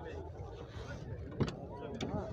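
A single sharp click of a car door latch as the driver's door of a sedan is opened, about one and a half seconds in, over a low murmur of background voices.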